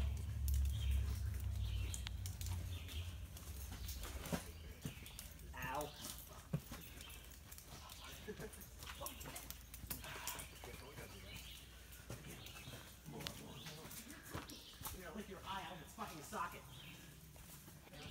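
Scuffs, knocks and scrapes of someone scrambling over rock with a phone in hand, the handling rubbing against the microphone, with a few faint low voices now and then.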